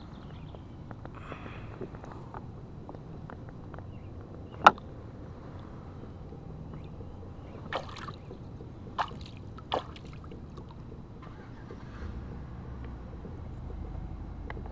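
Water sloshing and splashing at the side of a kayak as a large bass is let go by hand and kicks away, with a few sharp knocks on the hull; the loudest knock comes about a third of the way in.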